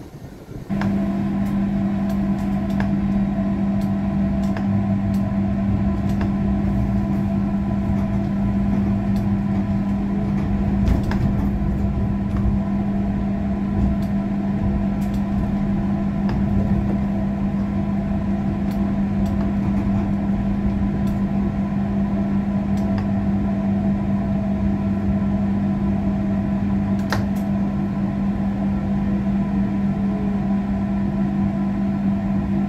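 Steady electrical hum of a tram's onboard equipment heard inside the cab: one constant low tone with fainter higher tones over it, starting abruptly about a second in, with a few faint clicks.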